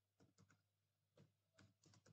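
Faint computer keyboard typing: about six irregularly spaced keystrokes.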